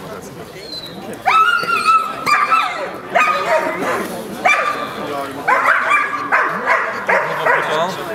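A dog giving a run of high-pitched yelping barks, about seven in quick succession, starting a little over a second in.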